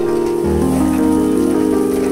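Soft ambient background music of sustained chords, with a steady rain-like hiss running under it.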